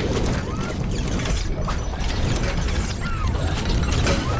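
Mechanical sound effects: a dense, rapid clatter of metallic clicks and ratcheting over a deep rumble, like engine parts moving into place.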